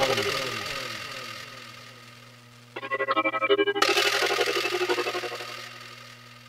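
Synthesizer keyboard starting a cumbia track over a sound system. A fading tail with falling pitch comes first. About three seconds in, pulsing chords start suddenly, joined a second later by a bright swell, and they die away near the end.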